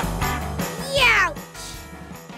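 Children's background music fading out, then a short cartoon-style sound effect about a second in whose pitch slides quickly downward.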